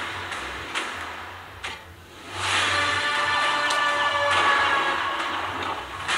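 Film trailer soundtrack: dramatic score with a couple of sharp hits in the first two seconds, then a loud sustained swell with held tones from about two seconds in.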